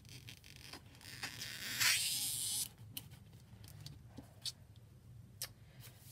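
Scissors (transfer trimmers) cutting through a plastic-backed stencil transfer sheet: one rasping cut of about a second and a half, then a few light clicks as the blades open and the sheet is handled.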